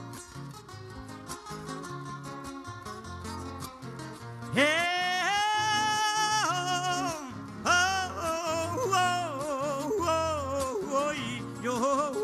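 Acoustic guitars strumming a steady décima accompaniment. About four and a half seconds in, a male singer comes in with long, held, wavering wordless notes: the drawn-out 'ay' lament that opens a Panamanian décima.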